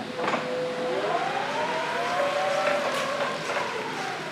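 A 1994 Linde E16S electric forklift driving and turning on a smooth concrete floor, with whining tones that rise and fall as it moves, and a few short clicks.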